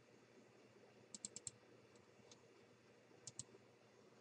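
Faint computer mouse clicks over near-silent room tone: a quick run of four clicks about a second in, a single click, then two close together near the end.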